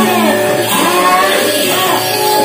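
Music accompanying a Javanese gedrok buto dance: a repeating melodic phrase of held notes and sliding pitches over a steady low drone.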